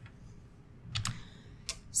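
A few short clicks in a quiet room, about a second in and again near the end: a computer key pressed to advance the presentation slide.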